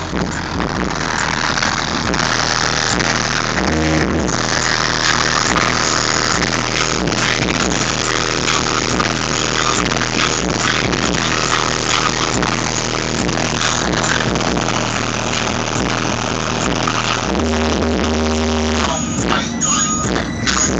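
A 1992 Chevy Caprice's 7500-watt car audio system playing bass-heavy music through subwoofers, loud and beating hard. Deep bass notes hold steady and shift about four seconds in and again near the end.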